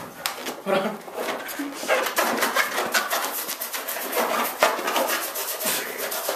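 People laughing hard, in rapid pulsing bursts mixed with voices.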